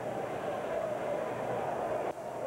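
Steady murmur of a baseball stadium crowd, a continuous wash of many voices.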